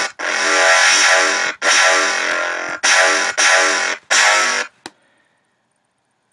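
Distorted dubstep bass patch on the Massive software synth, played as a run of about five sustained notes of uneven length, bright and buzzing with overtones. The envelope attack is being adjusted as it plays. It cuts off about five seconds in.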